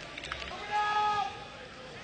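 Faint open-air stadium ambience during a football match, with a distant voice calling out once, held for about half a second near the middle.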